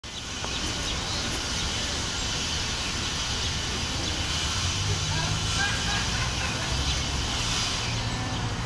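Steady outdoor background noise: an even hiss with a low, uneven rumble, and faint voices in the distance.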